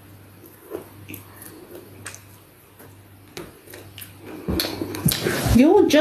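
A person chewing a mouthful of food, with soft scattered mouth clicks. Near the end a few low thumps, then a voice starts with a rising and falling vocal sound.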